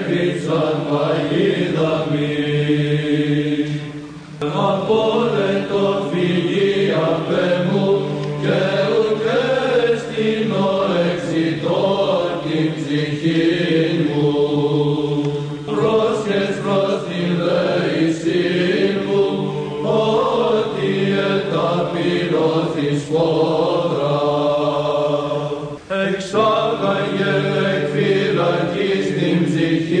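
Greek Orthodox Byzantine chant of psalm verses: male voices sing a slow, drawn-out melody over a steady held drone (ison), with two short breaks for breath.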